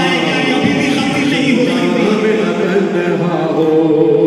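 Men's voices singing a noha, a Shia mourning lament, unaccompanied, in long held notes.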